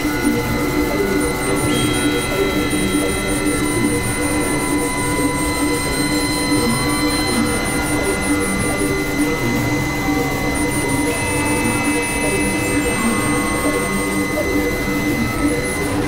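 Experimental electronic drone-noise music from hardware synthesizers: several held tones sound together over a dense bed of noise, with higher tones entering and dropping out and a fast, faint ticking pulse high up.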